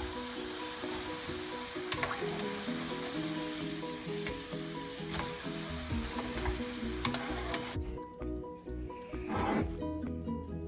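Hot oil sizzling in a frying pan as French fries are lifted out with metal tongs, with a few sharp clicks, under background music. The sizzle stops about eight seconds in.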